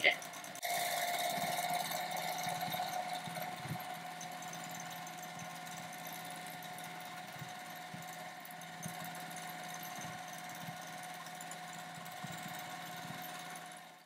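Juki domestic sewing machine running steadily while free-motion quilting a quilt. The motor and needle hum starts about half a second in, a little louder for the first few seconds, then holds even.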